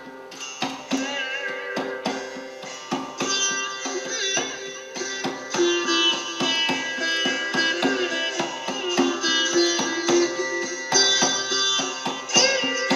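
Sitar played live, with a steady drone under plucked melody notes that bend in pitch, and a hand drum keeping time alongside.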